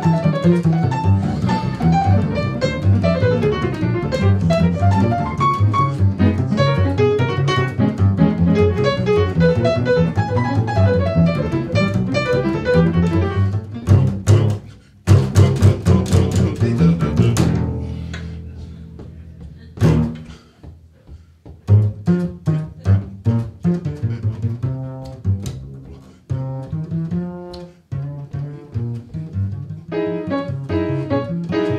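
Upright double bass played pizzicato in a jazz style. Busy, dense plucked lines come first; about halfway through they give way to sparser ringing notes, with a few hard-plucked accents and short pauses.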